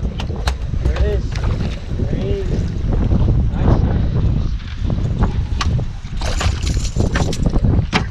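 Wind buffeting the microphone and water slapping against a small boat's hull, with brief faint voices. Near the end there is a rough stretch of splashing and clatter as a hooked bluefish is lifted out of the water onto the deck.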